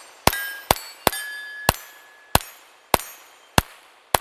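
Seven quick shots from a custom-built Ruger Mark IV 22/45 pistol firing CCI Standard Velocity .22 LR, about one every half second. Each shot is followed by the ring of a struck steel plate on a plate rack.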